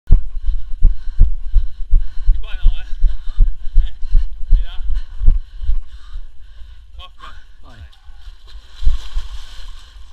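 Heavy, dull low thumps at an even pace of about three a second for the first six seconds, with people's voices over them and a few more near the end.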